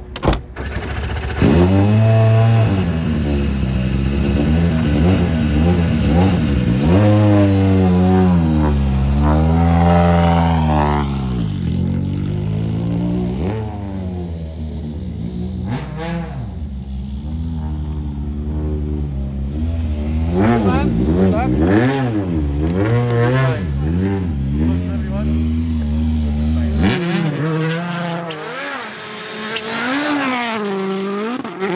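Hyundai i20 Coupe WRC rally car's 1.6-litre turbocharged four-cylinder engine running while the car stands still, revved up and down again and again. It starts about a second and a half in and cuts off suddenly about three seconds before the end.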